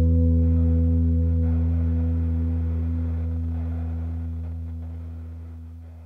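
The final chord of an indie rock song ringing out on guitar, its low notes held in one long, slow fade.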